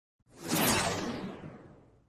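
A whoosh sound effect for an intro logo: a swish that swells quickly about half a second in, then fades away over the next second and a half, its high end dying out first.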